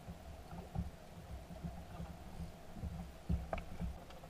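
Irregular low thumps and knocks on a small fishing boat's hull and deck, with water slapping against the hull; a sharper, louder knock comes about three and a half seconds in.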